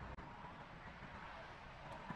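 Faint, steady background noise: a low rumble with light hiss and no distinct sound standing out.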